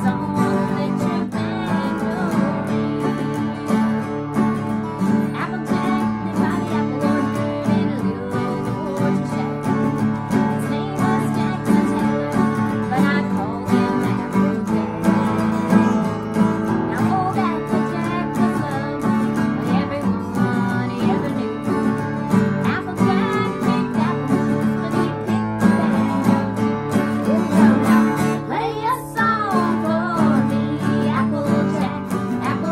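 Two acoustic guitars strummed together in a steady country/bluegrass rhythm, with two women's voices singing over them.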